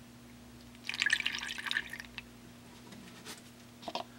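Distilled water poured through a plastic funnel into a cell of a flooded lead-acid battery: a splashing trickle about a second in, lasting about a second, to bring the electrolyte above the plates. A few light clicks follow near the end.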